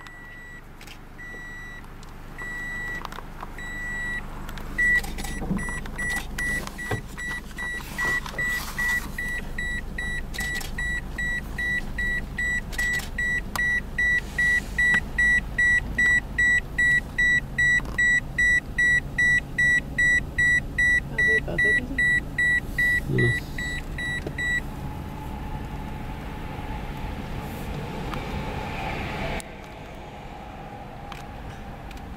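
A car's interior warning chime beeping repeatedly, slowly at first, then in a faster, louder run of about two beeps a second that stops about 25 seconds in. A low rumble of the car runs underneath.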